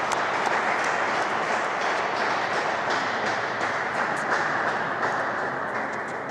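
Audience applauding, a steady dense clapping that begins to die away near the end.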